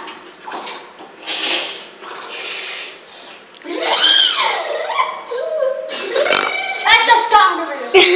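Children's voices: vocal noises that are not clear words. About four seconds in there is one long call that rises and then falls in pitch, and more noises follow near the end.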